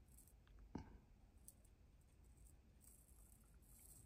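Near silence, with one faint click about three quarters of a second in and a few fainter ticks: an arrow shaft being rolled on the rollers of a spine tester.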